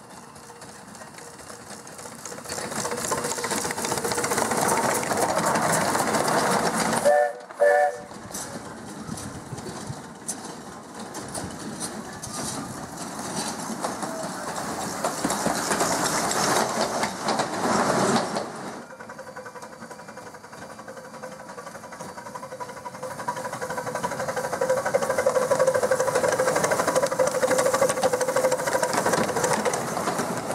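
Miniature steam locomotive running with a passenger train, its chuffing and wheel noise steady and rising and falling as it passes, with two short whistle toots about seven seconds in.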